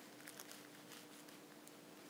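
Near silence: faint room hum with a few soft, short ticks as a knife is worked through a wheel of brie.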